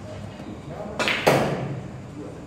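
Pool shot: the cue tip strikes the cue ball about a second in, and a moment later comes a louder, sharper clack as the cue ball hits an object ball.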